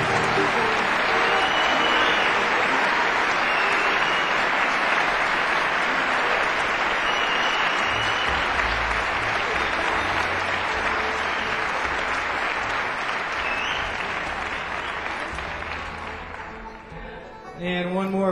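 Concert audience applauding steadily, with a few short whistles above the clapping, dying away over the last few seconds.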